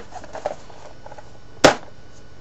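A single sharp knock about one and a half seconds in, over low room noise.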